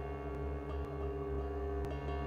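Electronic ambient music: a dense, sustained drone of many layered steady tones over a strong low hum, with a few faint clicks.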